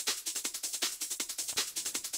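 Sampled tambourine loop playing on its own, a fast, even run of jingling strokes.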